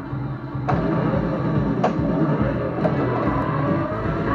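Pinball machine's game audio from an upgraded PinSound board and stereo speakers: music that starts suddenly, with sharp hits about once a second.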